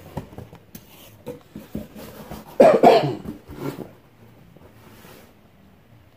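A man coughing: one loud cough about two and a half seconds in, followed by a smaller one, amid light rustling and clicking of cardboard and paper being handled.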